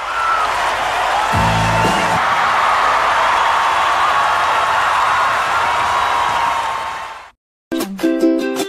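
Live concert crowd cheering and applauding, with a few whistles and whoops on top, fading out after about seven seconds.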